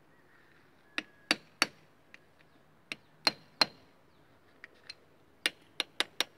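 Hammer blows on a steel punch held against an excavator final drive bearing, driving the bearing off its seat. About ten sharp metal-on-metal strikes come in short runs of two or three, some with a brief ring.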